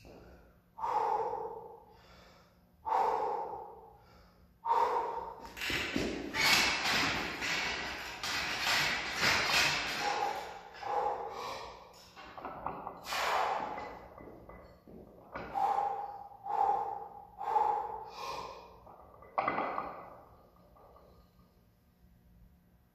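A weightlifter's heavy, forceful breathing while bracing under a loaded barbell and squatting it: loud breaths every second or two, a longer run of hard breathing in the middle, and a quick series of four breaths near the end.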